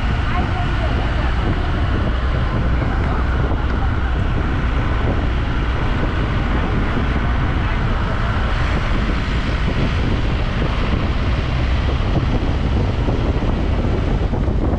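A vehicle driving along a road, heard as a steady low rumble with wind rushing over the microphone.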